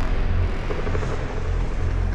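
Cinematic sound design: a loud, steady low rumble with a dense noisy wash above it, carrying on from a hit about a second before.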